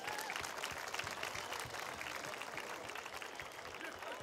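Audience applauding: the dense patter of many hands clapping, easing off slightly toward the end.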